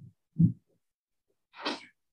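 Two short non-speech vocal sounds from a man: a loud, low burst about half a second in, then a brief noisy, breathy burst about a second later.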